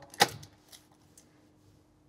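Ignition key turned in the lock: one short, sharp click about a quarter of a second in. After it there is only a very faint steady hum.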